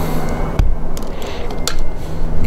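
An EV charging connector is pushed into the car's charge port: a sharp knock about half a second in, then a couple of light clicks as it seats. A steady low hum and rumble run underneath.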